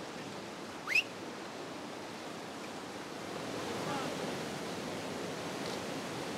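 River water rushing steadily. About a second in there is a short, sharp rising whistle.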